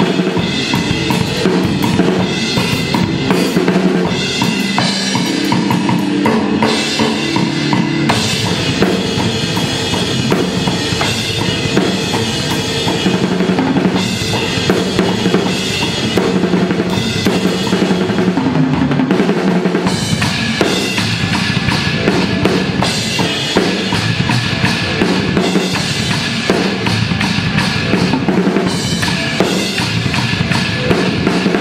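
Drum kit played continuously in a fast metal drum part, with bass drum, snare, toms and cymbals struck without a break.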